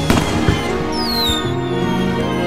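Soundtrack music with fireworks over it: two sharp bangs in the first half second, then a falling whistle that starts about half a second in.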